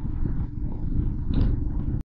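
Motorcycle riding along, its engine running under heavy wind rumble on the onboard camera's microphone, with a brief hiss near the end.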